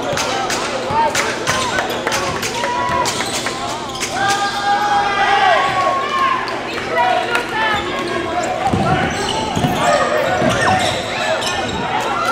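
Live basketball game sound: a ball dribbled on a hardwood court, sneakers squeaking on the floor, and players' voices calling out.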